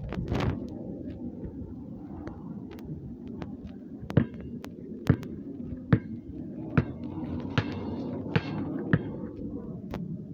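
A basketball dribbled on a concrete pad: about seven sharp bounces a little under a second apart, starting about four seconds in, over steady rustling and handling noise.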